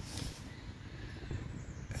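Faint handling noise of a rubber coolant hose being pressed by hand into its retaining clip, over a low rumble.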